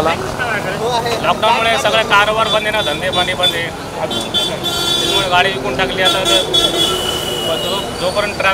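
A man talking over street traffic, with a vehicle horn held for about three seconds in the second half.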